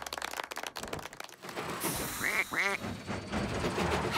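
Cartoon sound effects: a dense crackle of clicks, then two short squeaky calls that bend up and down, about two seconds in.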